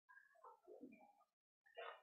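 Near silence, with a faint, indistinct wavering sound in the background.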